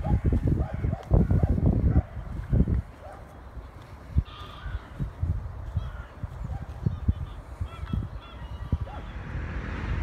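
Wind buffeting the microphone, in strong gusts for the first two to three seconds, then lighter.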